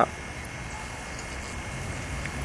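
Steady low background noise with a faint hum and no distinct event: outdoor ambience.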